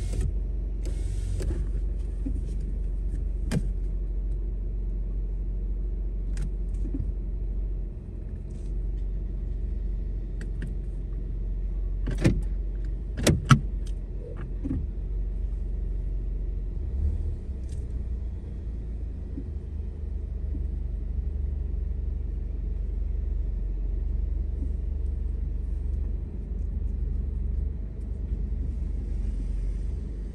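Car heard from inside the cabin at idle and low speed: a steady low engine and road rumble, with a few sharp clicks, the loudest two about thirteen seconds in.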